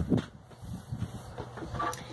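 Soft knocks and rustling as a person moves and settles close to a phone microphone, with a sharper knock just after the start and a low steady hum underneath.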